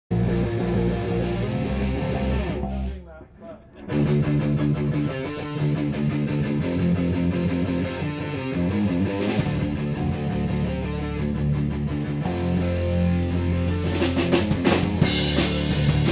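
Live rock band playing an instrumental intro on electric guitar, bass guitar and drum kit, with a short break about three seconds in before the band comes back in; the cymbals build up near the end.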